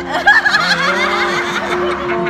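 Several women laughing and giggling loudly close by, in high-pitched bursts that peak just after the start, over steady plucked-string music.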